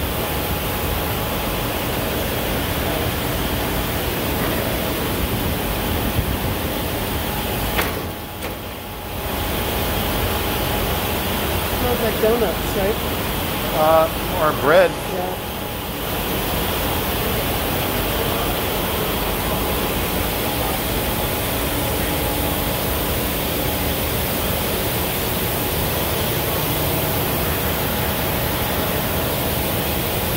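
Steady noise of distillery machinery and air handling on the production floor. It dips briefly about eight seconds in, and a few indistinct voices come through a few seconds later.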